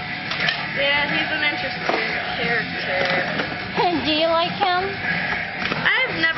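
Background music from a shop's sound system, with people's voices talking over it.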